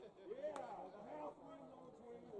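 Nearby spectators talking, several voices overlapping, with one sharp click about half a second in.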